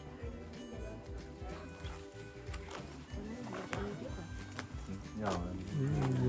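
Background music with steady held tones, and people's voices, which get louder near the end.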